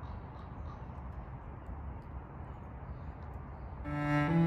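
Outdoor woodland ambience: a steady low rumble and hiss with faint, short high chirps of small birds scattered through. A bowed cello note enters just before the end.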